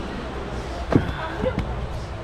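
A loud thump about a second in and a lighter knock about half a second later, as a backpack is put up on a train carriage's luggage rack, over a steady low rumble.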